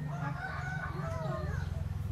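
A rooster crowing once, a bending, pitched call lasting about a second and a half, over a steady low hum.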